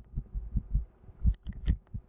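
A series of soft low thumps, about six in two seconds and irregularly spaced, two of them topped by sharper clicks in the second half.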